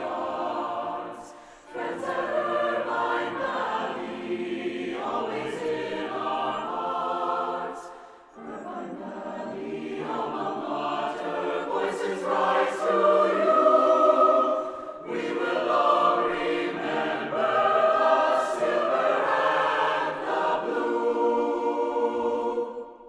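Mixed choir of men's and women's voices singing in phrases, with short breaths about 2, 8 and 15 seconds in, ending on a held chord.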